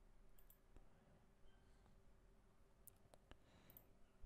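Near silence broken by a handful of faint, sharp clicks: a couple about half a second in, then several more close together in the last second and a half.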